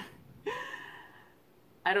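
A woman's short breathy vocal sound about half a second in: a brief voiced start that trails off into an airy exhale within about a second.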